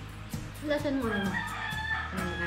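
A rooster crowing, starting a little under a second in: one long call that glides down and then holds a high note, over a steady low hum.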